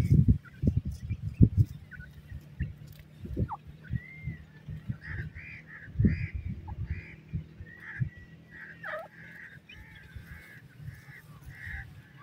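Grey francolins calling: a run of short, soft notes about two a second, starting about four seconds in. Low thumps sound in the first couple of seconds.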